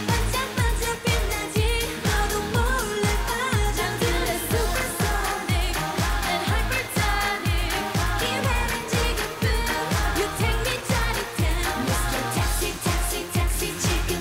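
K-pop girl group singing live over a dance-pop backing track with a steady kick-drum beat.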